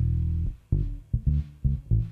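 Electric bass guitar playing a low riff: one held note, then several short, clipped notes.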